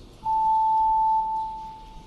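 A single pure electronic tone from the chamber's voting system, signalling the open electronic vote. It starts about a quarter second in, holds steady for about a second, then fades away.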